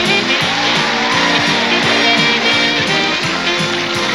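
Live band playing an up-tempo instrumental break led by a saxophone, over drums, bass and electric keyboard. The saxophone line glides up and then back down in pitch in the first couple of seconds.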